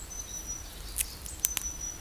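A few light ticks of a knife blade being set on the cut end of an upright wooden stake, ready for batoning, over faint forest ambience. Two thin, steady, high whistling notes come and go, one early and one near the end.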